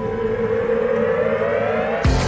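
A rising, siren-like synthesized tone in a TV show's opening theme music, sweeping steadily upward in pitch over a sustained low musical bed.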